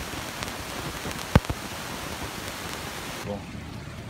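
Steady hiss of rain falling, with one sharp knock about a third of the way in. The hiss cuts off suddenly near the end.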